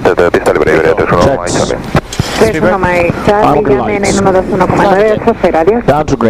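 A voice talking, over a steady low background rumble.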